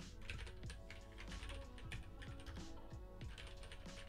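Typing on a computer keyboard: a quick, irregular run of faint key clicks as a line of code is typed.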